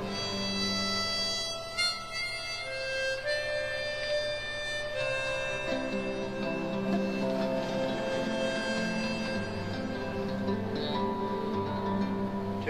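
Harmonica playing a melody in long held notes, accompanied by classical nylon-string guitar.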